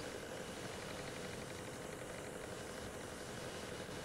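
Steady low background hiss with a faint even hum, with no distinct events: room tone picked up by a webcam microphone during a video call.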